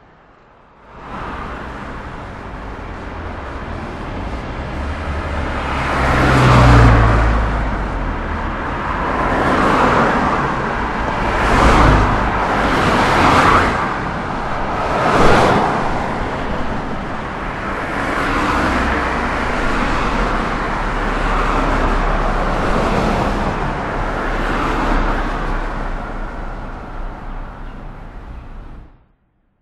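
Road traffic: several cars pass in quick succession between about 6 and 16 seconds in, each one swelling and fading, over a steady low rumble of traffic.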